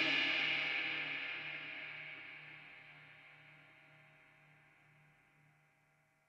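Istanbul Agop 22" Traditional Jazz Ride cymbal ringing out after a single hard strike, its wash dying away steadily to silence about five seconds in. The high shimmer fades first, leaving a low hum that wavers slowly.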